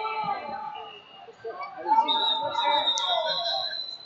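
Shouting and talk from coaches and spectators echo in a large gym. From about halfway in, a high whistle tone holds steady for about two seconds, as a referee's whistle stopping the wrestling.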